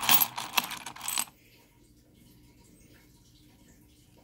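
Stone artifacts and pieces of petrified wood clinking and clattering against one another as a hand rummages through a bowl of them, a rapid jumble of hard clicks lasting a little over a second.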